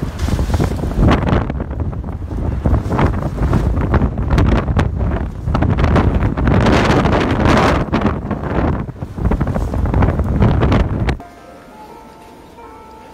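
Strong gusting wind buffeting the microphone, a heavy low rumble that rises and falls in gusts, until it cuts off suddenly near the end.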